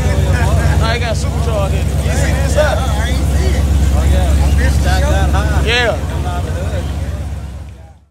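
Supercharged small-block Chevy V8 in a Toyota Land Cruiser running with a steady, pulsing low rumble as the truck pulls away, with people talking over it. The sound drops about six seconds in and fades out at the end.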